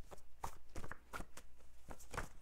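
A deck of oracle cards being shuffled by hand: a run of irregular short taps and slaps as the cards are worked.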